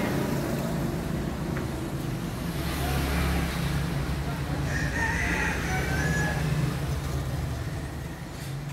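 Rooster crowing: a single drawn-out crow about five seconds in, lasting about a second and a half, over a steady low rumble.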